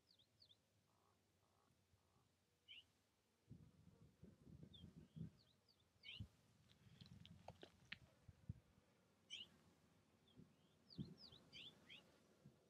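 Faint, quick high chirps of small birds, coming in little runs of a few notes scattered through the quiet, with some faint low rumbling in the middle and again near the end.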